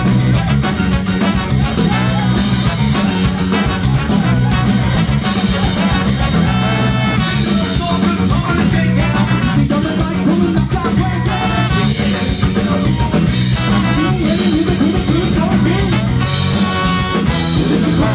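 Ska band playing live at full volume: trumpet, electric guitar, bass and drums, with vocals.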